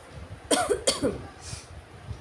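A woman coughs twice in quick succession, about half a second and a second in, followed by a fainter breath-like burst.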